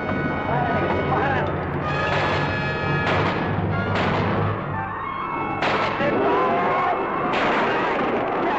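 Rifle shots, about five spread over several seconds, over loud dramatic film music, with voices shouting.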